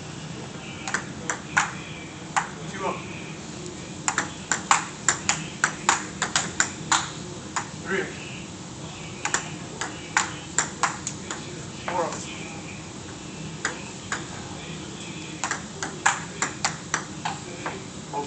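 Table tennis rallies: the ball clicking back and forth off paddles and the table in quick runs of hits, with short pauses between points. There are about four rallies.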